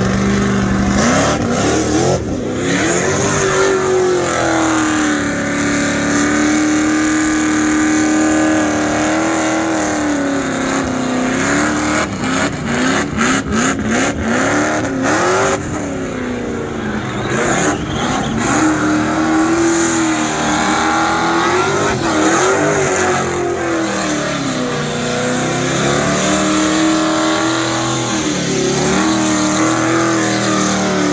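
Chevrolet Chevelle burnout car's engine held at high revs during a burnout, its pitch rising and falling over and over as the throttle is worked, with the rear tyres spinning in smoke. About halfway through, the engine note stutters rapidly for a few seconds.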